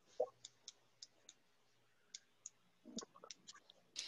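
Faint, irregular short clicks with quiet between them, a small cluster of them about three seconds in.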